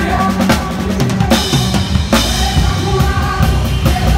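Acoustic drum kit played in time with a live band: kick and snare hits with two cymbal crashes, about one and two seconds in, loudest over the bass guitar and other instruments.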